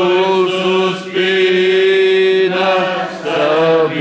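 A church congregation singing a hymn together in long, held notes, with short breaths between phrases about a second in and again just after three seconds.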